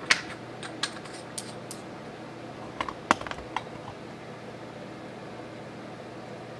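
Small plastic makeup items being handled and set down: a scattering of about ten short clicks and taps, the sharpest just after the start and about three seconds in.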